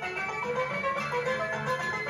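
Music played from an old vinyl record on a vintage console record player, a steady run of instrumental notes.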